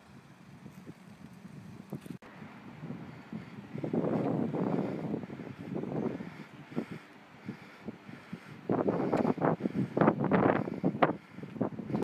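Wind buffeting the microphone in irregular gusts: faint at first, loudest from about four to seven seconds in and again near the end.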